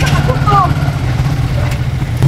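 Small motorcycle engine of a passenger tricycle (motorcycle with sidecar) running steadily at low speed, with faint voices over it.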